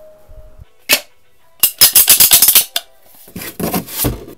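A sharp click about a second in, then a fast run of about ten loud clicks, and a rougher rattling burst near the end.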